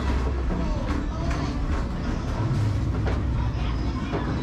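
Basketballs from an NBA arcade basketball machine knocking against the backboards and rims and rumbling down its return ramp, a low rumble with a few sharp knocks. Arcade noise and voices go on underneath.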